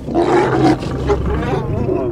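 Lions snarling and growling as they fight, a sudden loud outburst that lasts about a second and a half. Music plays underneath.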